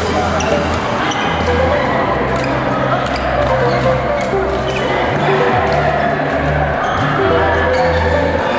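Badminton rackets striking a shuttlecock in a rally, sharp clicks over background music with a steady bass line.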